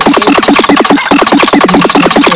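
Electronic dance music from a remix track, with a rapid, chopped beat of many short strokes per second over steady synth tones.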